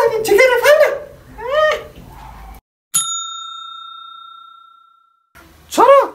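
A single bell ding: one clear struck-bell tone that rings out and fades over about two seconds.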